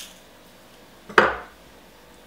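Metal garlic press being handled while garlic is pressed: one sharp clack about a second in, otherwise quiet.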